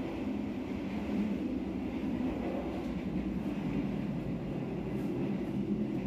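Steady running noise of the Argo Bromo Anggrek's stainless-steel passenger car in motion, heard from inside: an even low rumble from the wheels and the moving carriage.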